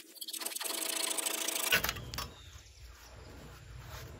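Japanese pull saw cutting through a 2x8 board, a dry scratchy sawing of the fine teeth on the pull strokes. The sawing stops a little under halfway through, leaving only faint low background noise.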